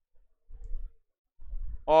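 Mostly quiet room with a few faint low bumps, then a man begins speaking just before the end.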